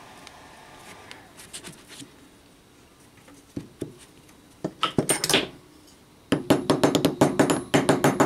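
Small hammer tapping a drift to seat copper commutator segments home in an aluminium mould. After a few faint handling clicks come a couple of taps about five seconds in, then a quick run of light taps, about seven a second, from just past six seconds.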